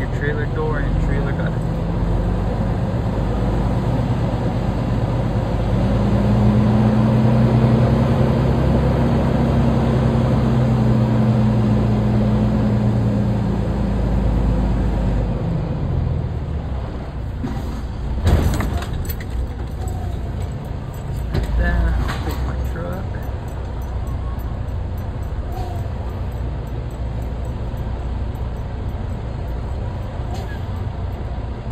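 Semi-truck's diesel engine running under load while reversing the tractor-trailer, its note rising for several seconds and then dropping back and easing off around the middle. A little past the middle comes one short, sharp sound, with a few smaller ones a few seconds later.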